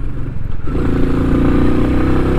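Royal Enfield Meteor 350's single-cylinder engine running under way, its note growing stronger a little under a second in, over a haze of wind and road noise.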